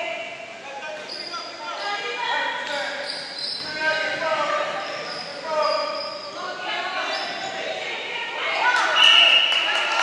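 Basketball game on a hardwood gym floor: the ball bouncing, sneakers squeaking, and players and spectators calling out, echoing in the hall. It grows louder near the end.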